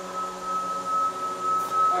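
A steady high-pitched whine held at one pitch, with a fainter low hum beneath it.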